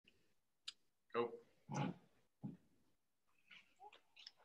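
A sharp click, then three short, low, pitched vocal sounds a little over half a second apart, fairly faint.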